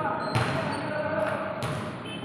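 A basketball bouncing twice on a hard court floor, about a second and a quarter apart, each bounce echoing in a large covered hall. Voices talk in the background.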